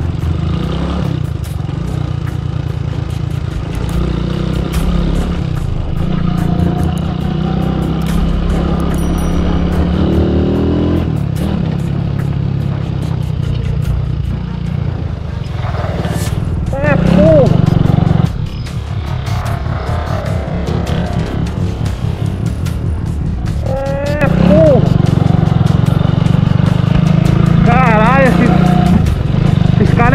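Honda CG Titan motorcycle's single-cylinder four-stroke engine running steadily under way, easing off for a few seconds in the middle. A voice or music is heard over it in the second half.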